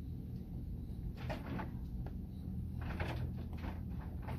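A cat licking and chewing food in two short runs, about a second in and again around three seconds, over a steady low hum.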